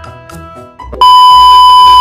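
Background music, then about a second in a very loud, steady electronic beep, one high tone that starts and cuts off abruptly after about a second.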